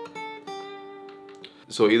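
Steel-string acoustic guitar playing a slow single-note lead melody, each picked note left to ring; a new note comes in just after the start and a lower one about half a second in, ringing on and fading until a man's voice comes in near the end.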